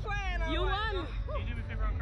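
Women's high-pitched laughing and squealing voices, strongest in the first second, over a steady low rumble.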